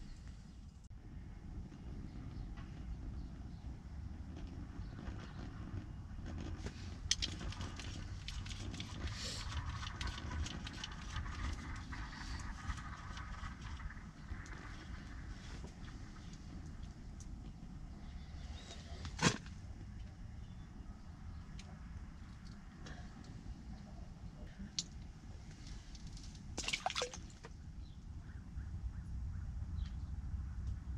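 Steady low rumble with scattered small clicks and knocks from handling an ice fishing jig and line, a sharp click about two-thirds of the way through and a short cluster of clicks near the end.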